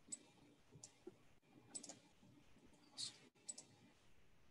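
Faint, sharp clicks, five or so scattered through a few seconds of near-silent room tone. The strongest comes about three seconds in.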